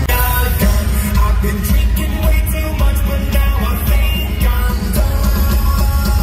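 Live rock band playing loud through a concert PA, with a vocalist singing over heavy bass and drums, heard from inside the crowd.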